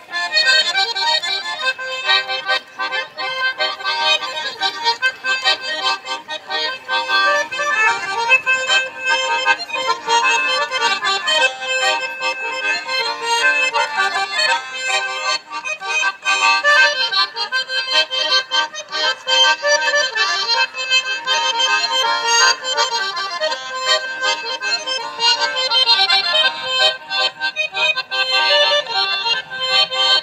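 Two garmons (Russian button accordions) playing a dance tune together without pause, amplified through a PA system.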